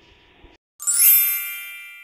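A bright chime sound effect strikes a little under a second in and rings out, fading over about a second and a half.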